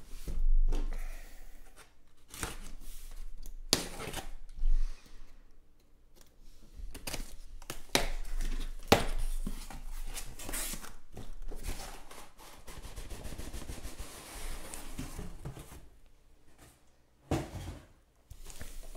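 A cardboard shipping case being torn open by hand: packing tape and flaps rip and scrape, and the boxes inside knock and slide against the cardboard as they are pulled out. It comes as a series of short rasps and knocks with brief pauses between them.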